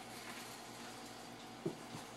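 Quiet room tone with a single short knock about three-quarters of the way through.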